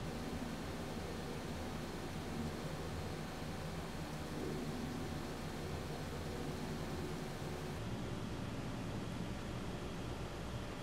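Steady low hiss of room tone with a faint hum, with no distinct sounds standing out.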